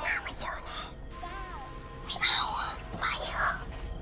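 Two children whispering to each other in a few short, breathy bursts, over a faint film score with a thin wavering tone.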